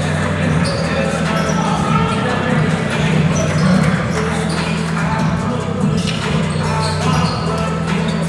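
Music playing over a gymnasium sound system, with basketballs bouncing on the hardwood floor and people's voices echoing in the hall.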